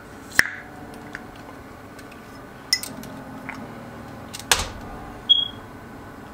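Plastic screw cap being twisted on a bottle of coconut water, with a sharp click about half a second in. Then a few light clicks and knocks, a heavier knock with a low thud about four and a half seconds in, and a brief high ping just after it.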